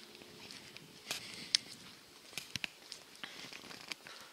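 Faint footsteps on a stone-paved terrace: a few irregular light clicks, the sharpest about one and a half seconds in.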